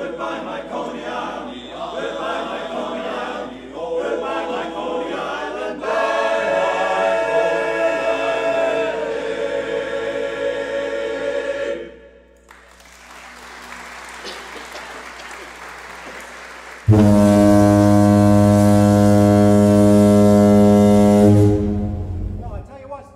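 A men's barbershop chorus singing in close harmony for about twelve seconds. After a few seconds of quieter noisy hiss, a long, loud, low, steady horn blast sounds for about four and a half seconds and cuts off abruptly.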